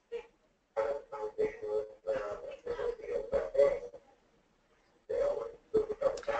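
A voice in choppy, distorted bursts with short gaps of near silence, carrying a steady tone near 500 Hz beneath it.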